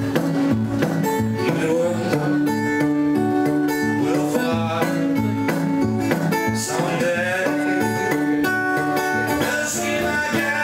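Solo steel-string acoustic guitar fingerpicked in a ragtime-style Texas blues, with steady stepping bass notes under the melody, and a man singing in places.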